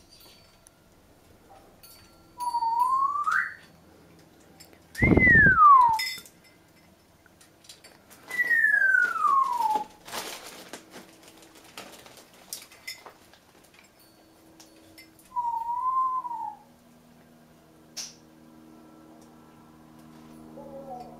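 Congo African grey parrot whistling: four separate whistles, one rising, two falling and one that wavers, with a low thump under the second. Light metallic clinks from the hanging toys come in between.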